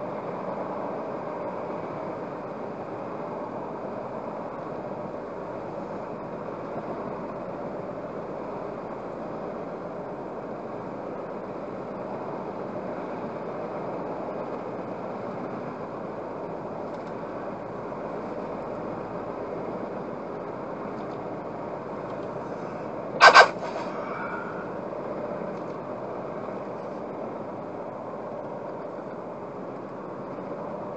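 Steady cabin noise of a car cruising on a dual carriageway at about 80 km/h, tyre and engine noise picked up by the dashcam's microphone inside the car. About two-thirds of the way through, a single short, loud beep-like tone cuts in briefly.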